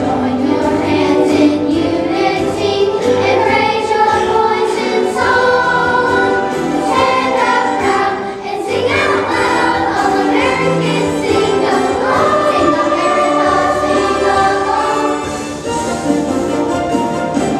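A children's choir singing, with sustained notes and a brief break for breath about halfway through.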